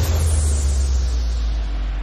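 Closing hit of an electronic logo sting: a deep sustained bass boom under a hissing noise wash that darkens as it dies away.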